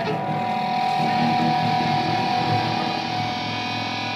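Electric guitar holding one long, steady sustained note, over lower notes that keep moving underneath.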